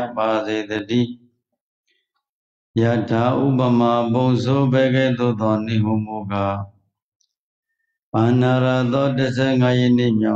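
A Buddhist monk's male voice intoning a recitation in a steady, chant-like tone. It comes in three phrases separated by pauses of about a second and a half, in which the sound cuts to dead silence, as over a video-call link.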